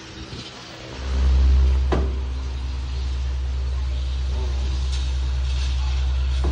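Electric fan running, with a loud, steady low rumble that starts suddenly about a second in and holds, as the fan's air blows onto the microphone. A short click about two seconds in.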